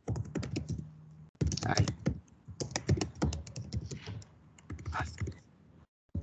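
Typing on a computer keyboard: quick runs of key clicks with short pauses between them, as a name is typed out.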